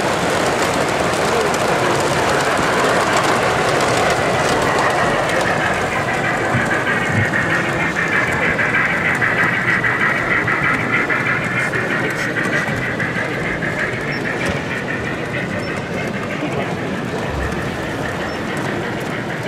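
O gauge model trains running past on the track: coaches, then a long train of goods vans, with a steady rolling whir that swells in the middle and fades toward the end.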